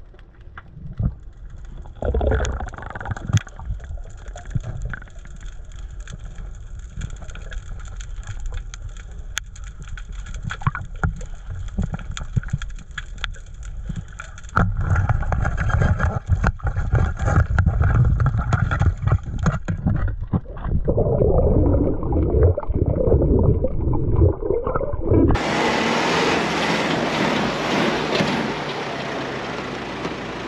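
Underwater sound through an action camera's housing: muffled water with scattered clicks and a low rumble that grows louder about halfway through. About 25 seconds in it cuts sharply to a loud, even open-air hiss.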